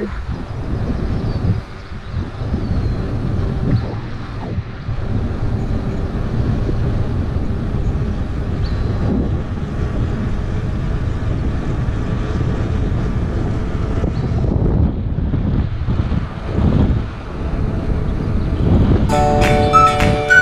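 Wind buffeting an action camera's microphone on a moving bicycle: a steady, low rumble. Flute music comes in about a second before the end.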